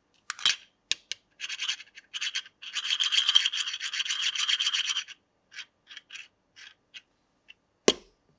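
Hard plastic toy kitchen pieces handled: a few sharp clicks, then a few seconds of rapid scratchy rubbing as the plastic fried egg is worked against the toy frying pan. After that come light taps, and a sharper knock near the end as the pan is set down on the toy stove.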